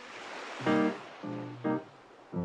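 Instrumental swing-style jazz. A hissing wash fades out over the first half-second, then three short, detached piano chords sound in quick succession.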